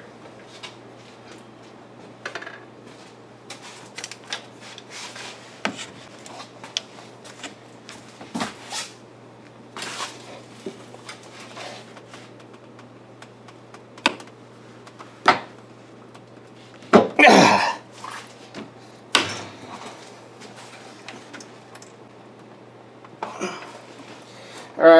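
Scattered metal clinks and clanks of a long bar, socket and locking pliers as the harmonic balancer's crankshaft bolt is turned a further 85 degrees after torquing, a few louder knocks in the middle.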